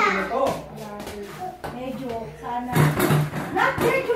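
Mostly voices: children and adults talking and calling out over one another, with no clear words.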